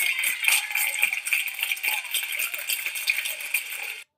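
Studio audience applauding and cheering, with high whoops rising and falling over the claps, as a televised dance performance ends.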